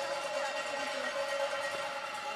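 Steady ambient hum of an indoor curling rink, with no distinct event.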